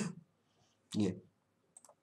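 One short spoken word about a second in, then a few light clicks near the end from a computer mouse.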